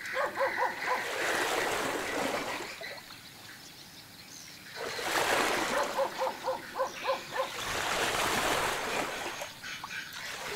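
Water splashing and rushing against the river bank, swelling and easing. Over it come two quick runs of short, high yapping animal calls, about five a second.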